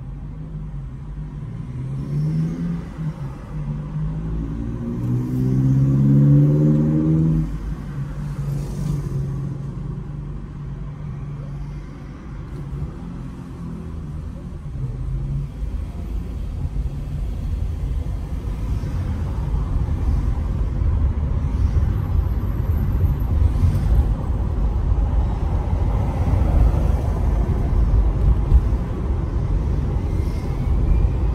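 Car in city traffic heard from inside: a low steady hum while stopped, with a pitched sound that steps up and down during the first several seconds, then a low rumble that grows louder from about halfway as the car pulls away and gains speed.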